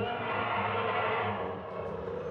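An animatronic Tyrannosaurus rex's recorded roar played through loudspeakers: it starts suddenly and fades after about a second and a half, ringing with echo.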